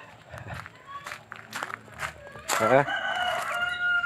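A rooster crowing once, starting a little past halfway: a loud, drawn-out call held for about a second and a half.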